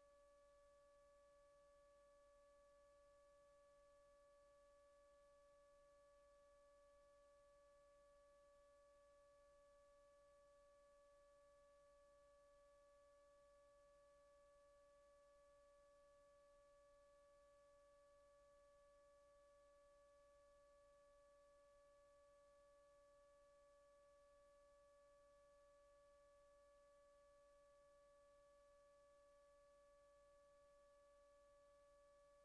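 Near silence, with a faint steady electronic tone held at one pitch with weaker overtones above it, unchanging throughout.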